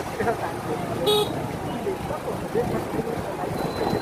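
City street traffic heard from a moving vehicle: steady engine and road noise, with a short vehicle horn toot about a second in.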